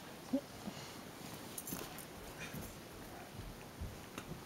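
Quiet room tone with faint rustles and small knocks, and a short low vocal sound about a third of a second in.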